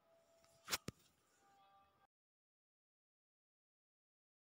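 Near silence broken by two brief clicks close together, a little under a second in. The sound then drops out completely about two seconds in.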